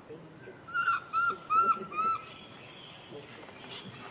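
An animal giving four short, high-pitched calls in quick succession, each rising and then falling in pitch, starting about a second in.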